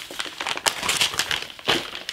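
Packaging crinkling and rustling as dropped items are gathered up and handled, with a couple of short sharp clicks.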